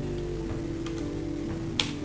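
Soft background music of steady low notes, with a few sharp clicks over it, the loudest near the end.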